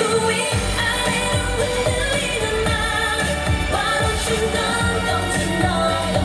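K-pop dance track with singing over a steady drum beat, the bass beat coming in about half a second in.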